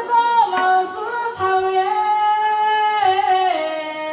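A woman singing a Tujia "five-sentence" folk song in a high voice, holding long notes that step down in pitch near the end.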